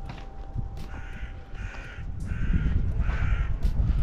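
A crow cawing four times in quick succession, harsh calls about half a second apart, over a low rumble that grows louder in the second half.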